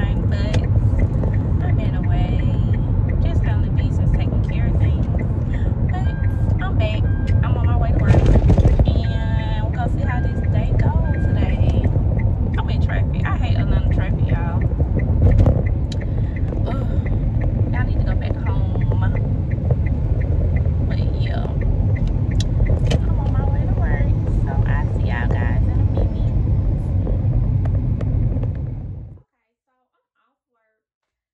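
Car cabin noise while driving at road speed: a steady low rumble of the road and engine, with a woman's voice over it. The sound cuts off suddenly about a second before the end.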